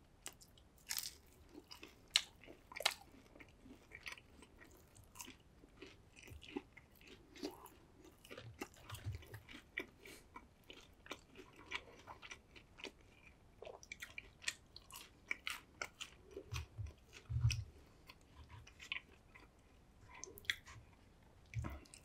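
Close-miked eating sounds: chewing fried chicken nuggets, with many small, irregular crisp crunches and wet mouth clicks. A few soft low thumps come in along the way.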